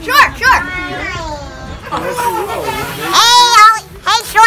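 Several boys yelling and shrieking excitedly in high voices, without clear words. A long, loud shriek comes about three seconds in.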